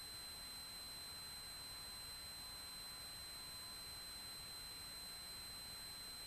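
Faint steady hiss with a thin, steady high-pitched tone running under it. This is electrical noise on the aircraft's intercom audio feed between transmissions, with no engine sound coming through.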